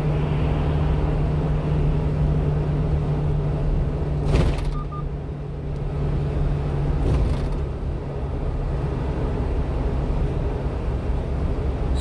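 Steady cab noise of a 1-ton box truck cruising at highway speed: a continuous low engine hum over road and tyre rumble. A short loud whoosh comes about four seconds in and a fainter one about seven seconds in.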